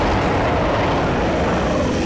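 A loud, steady rumbling sound effect of the kind laid under a monster scene in a TV drama, with no clear beat or tone.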